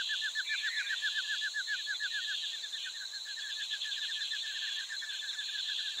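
Wildlife ambience: a rapid run of short, repeated chirps, about seven a second, over a steady, high-pitched insect drone.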